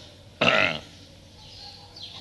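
A man's single short, throaty vocal sound about half a second in, over the steady hiss of an old lecture recording.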